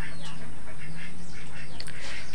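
Faint poultry calls over a steady low hum and background noise.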